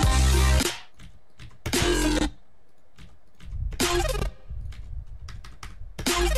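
Short snippets of a bass-heavy electronic track played back from a music production program, starting and cutting off abruptly three times. Computer keyboard taps come in the gaps between them.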